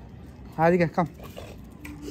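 Speech only: a person calls "come" to a dog once, about half a second in, over faint background.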